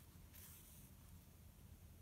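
Near silence: faint room tone, with a brief soft rustle about half a second in as yarn is drawn through crocheted stitches with a tapestry needle.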